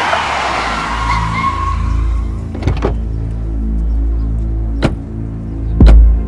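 A vehicle drives up and slows in the first two seconds, under a tense dramatic film score. The score has a steady low bass pulse and sharp percussive hits, three of them spaced a second or two apart.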